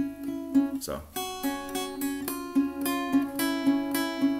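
Capoed steel-string acoustic guitar picked in a steady repeated pattern, about three notes a second, with the two lower strings barred and moved between frets. A short spoken "so" comes about a second in.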